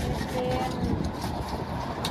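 Low, steady rumble of street traffic, with a faint voice briefly heard in the background about half a second in.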